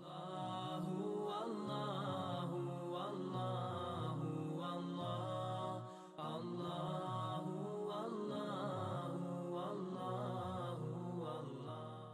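Chanted vocal music in a nasheed-style melody playing over an outro. It fades in at the start and dips briefly about halfway through.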